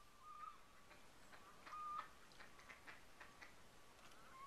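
Faint bird calls: short chirps with a slight upward bend about half a second and two seconds in, with a quick, irregular run of clicking chatter in between and after.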